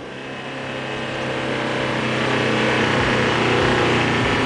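Mitsubishi L200 pickup's engine running while driving over dune sand, mixed with wind noise. The sound grows steadily louder over a few seconds.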